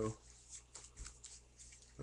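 Faint rustling and a few soft clicks of something being handled, including one sharper click about halfway through.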